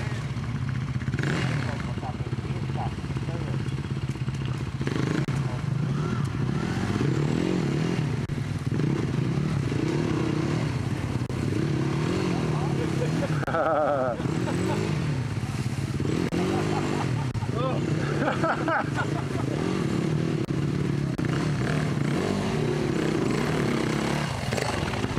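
Dirt-bike engines running and revving as the bikes are ridden through thick mud, the engine note rising and falling with repeated bursts of throttle.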